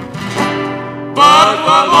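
Peruvian vals criollo played live: acoustic guitar notes fill a short gap, then just past a second in a male vocal trio comes in together, singing in harmony with a wide vibrato.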